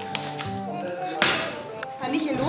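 Adhesive tape torn off a roll in one short, loud rip about a second in, with a sharp tap just after the start, over background music.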